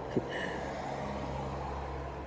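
Steady low hum of an idling car engine, with a faint click just after it begins.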